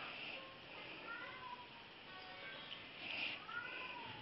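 A small puppy's faint, high whines, each rising then falling in pitch: one about a second in and another near the end.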